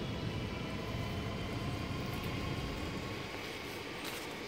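Low, steady rumble of a passing vehicle, swelling slightly in the middle and easing toward the end.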